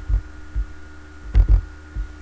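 A few short, low thumps picked up through the desk or microphone, the loudest a close pair about one and a half seconds in, one with a sharp click on top, over a steady electrical hum.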